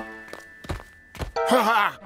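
Heavy cartoon footsteps of a giant, a few dull thuds, as background music fades out, followed near the end by a short vocal exclamation that slides in pitch.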